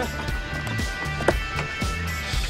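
Background film music with a steady bass line, and a single sharp knock about a second and a half in.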